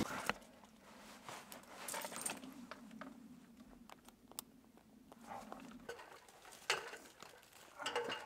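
Faint metal clinks and small rattles of a tree climber's harness hardware, carabiners and rings knocking together as the harness is buckled and adjusted, over a faint low hum in the middle seconds.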